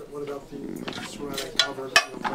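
Metal cookware clattering on an induction cooktop, with a few sharp clinks and the loudest one near the end, over a murmur of people talking.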